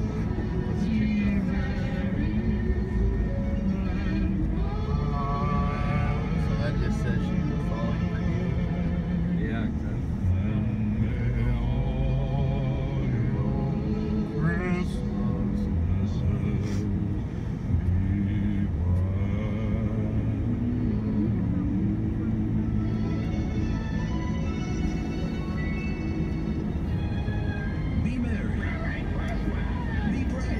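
Christmas song on the car's satellite radio, a singer's voice with vibrato over the accompaniment, heard inside the moving car with the steady low rumble of the drive underneath.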